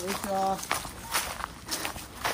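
Footsteps of people walking in sandals along a grassy path: soft, irregular steps, with a short spoken greeting near the start.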